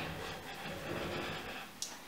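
A quiet pause: faint steady room noise, with a brief soft sound near the end.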